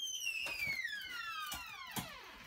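A high whistling tone gliding steadily down in pitch, falling faster near the end, with a few faint knocks.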